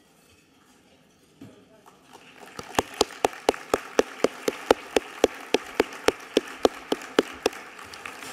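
Audience applause that builds about two seconds in. Over it, one person's loud, evenly spaced handclaps close to a microphone run at about four a second, stopping shortly before the end.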